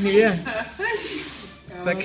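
A person's voice making short sounds, then a brief hiss about a second in.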